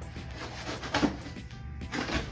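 A knife slitting the packing tape on a cardboard box, with a sharp scraping stroke about a second in and another cardboard rustle near the end, over background music.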